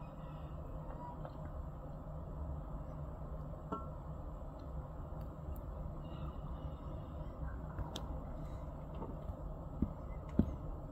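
Freight train of tank cars rolling past: a steady low rumble of steel wheels on rail, with a few faint clicks and a short squeak about four seconds in.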